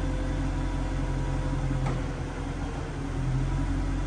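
Power-operated convertible soft top of a 2008 Jaguar XKR folding down and stowing: a steady motor hum with a faint whine, and a sharp click about two seconds in, after which the whine fades.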